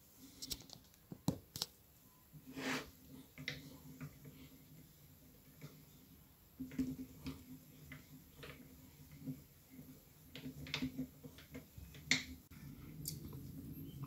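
Faint, irregular metallic clicks and ticks from the crank handle and mechanism of a homemade lathe ball-turning (radius) tool being turned by hand, rotating the tool body. The mechanism locks the rotor so it cannot turn on its own.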